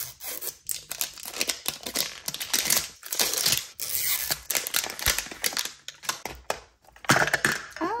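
Plastic wrapping crinkling and tearing in quick, irregular rustles as it is peeled off a Mini Brands capsule ball.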